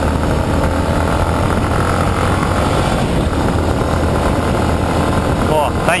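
Yamaha Lander 250 single-cylinder motorcycle engine running at a steady speed while riding, with wind rush on a helmet-mounted microphone; the sound cuts in suddenly and stays loud and even.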